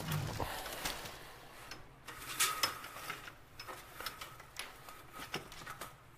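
Scattered light clicks and rustles of someone handling and adjusting equipment, coming irregularly, with a few louder knocks in the middle.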